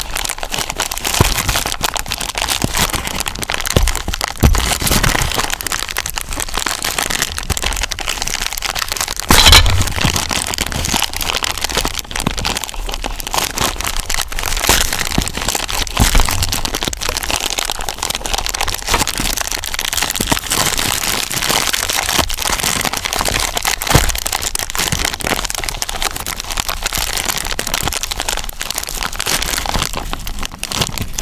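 Thin clear plastic bag crinkling and crackling close to the microphone as fingers pick at its gathered, tied top, with a louder crackle about nine seconds in.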